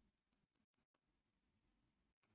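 Near silence: the sound track is essentially dead between spoken phrases.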